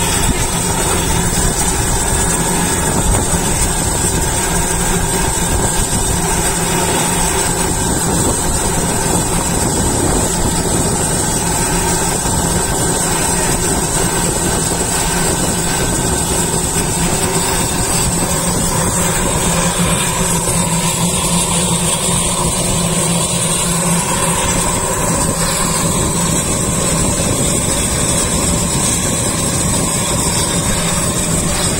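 Turboprop engine of a single-engine firefighting air tanker running steadily at ground idle during hot refuelling, a constant hum with a high steady turbine whine.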